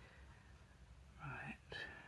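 Near silence, with a brief soft murmured voice a little over a second in.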